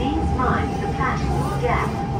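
Siemens C651 MRT train interior: a low rumble under a steady whine, with a voice talking over it from about half a second in.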